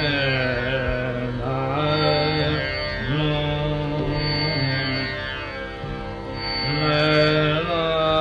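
Male dhrupad singing of raga Adana: a slow, unmetred line of held notes joined by glides, over a steady tanpura drone.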